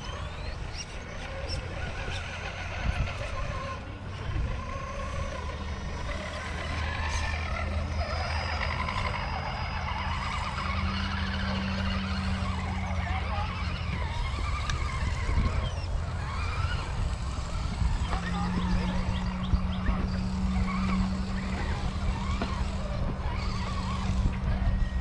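Background chatter of several people talking outdoors, over a steady low hum.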